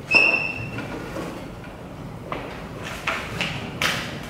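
A classroom chair scraping back across the floor with a short high squeal as someone stands up, followed by a few knocks and rustles of footsteps and papers at a desk.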